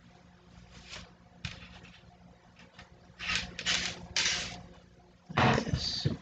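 Hands rustling and scraping yarn and a knitted piece against a wooden knitting loom in several short bursts, with a louder bump of handling near the end.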